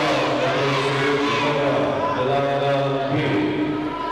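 A group of voices chanting, holding one long steady note for about three seconds before it fades near the end.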